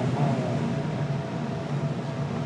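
Steady room ambience of an equipment-filled control room: a constant hum with a faint steady tone and hiss, and a voice trailing off in the first half-second.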